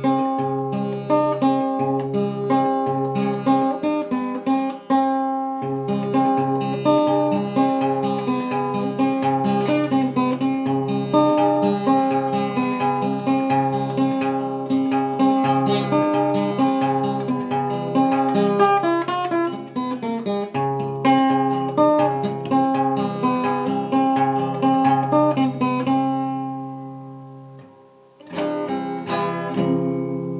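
Acoustic guitar fingerpicked over a C chord shape: a steady, repeating pattern of single plucked notes over a recurring bass note. The notes ring out and fade about four seconds before the end, then the picking starts again.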